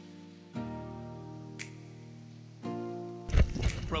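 Background music of held chords that change twice. Near the end a burst of loud, rough noise cuts in just as a voice starts.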